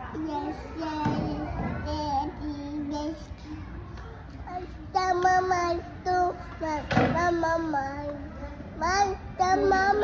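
Children singing a song together, with some talk between lines, getting louder about halfway through. A single knock cuts in about seven seconds in.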